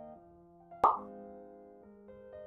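Soft keyboard background music holding sustained chords, with a single short, sharp pop sound effect a little under a second in that is much louder than the music.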